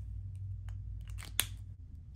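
Hands handling a paper planner and a pen: a few short light clicks and paper rustles, with one sharper click about one and a half seconds in, over a faint steady low hum.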